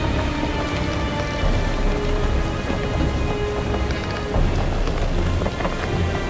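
Storm sound effects, steady rain with continuous rumbling thunder, with held music notes underneath, as a Halloween display's soundtrack.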